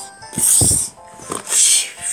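Two short hissing 'psshh' fight sound effects, each about half a second long, made by mouth over background music, with a low thump under the first.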